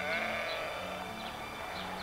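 Livestock at the ranch calling: one drawn-out call.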